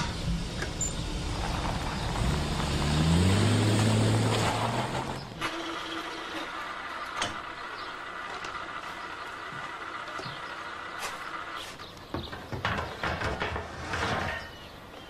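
A mail delivery truck driving by, its engine note rising as it passes and loudest about three to four seconds in, then cut off suddenly. After that, a quieter steady high whine with scattered light clicks and taps.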